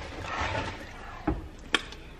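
Rustling handling noise, then two sharp clicks in the second half.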